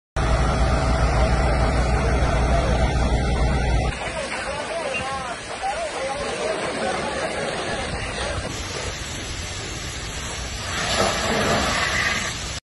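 On-scene noise at a large building fire being fought with water hoses: a steady rush of noise with voices in the background. A heavy low rumble runs through the first four seconds, then stops suddenly.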